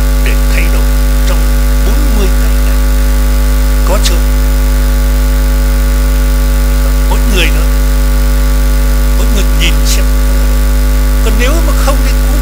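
Loud, steady hum with a ladder of even overtones, unchanging throughout, with a faint voice just audible beneath it.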